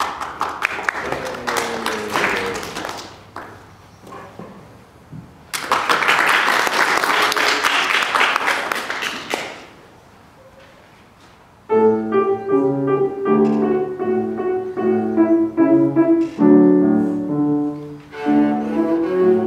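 Audience applause in two bursts, then after a brief lull a grand piano begins a gentle introduction of separate, evenly paced notes, about two-thirds of the way through.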